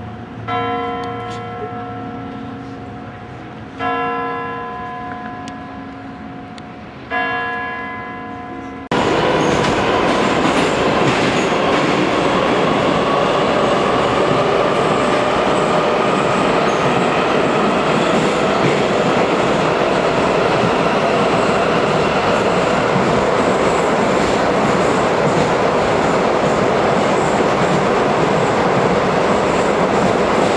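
Kremlin clock bell striking three times, about three seconds apart, each stroke ringing out and fading. About nine seconds in it gives way to a Moscow Metro train running at speed, heard inside the carriage: loud, steady rumble with a faint whine that slowly rises in pitch.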